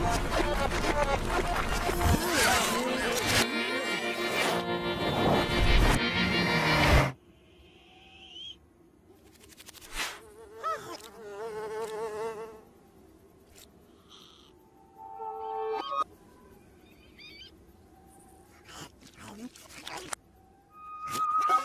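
Animated cartoon soundtrack: loud music with a vehicle rushing past for about seven seconds, cutting off suddenly. After that come sparse, short comic sound effects with wavering, warbling pitch.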